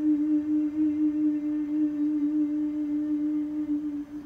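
A male singer holding one long note, steady in pitch with a slight waver.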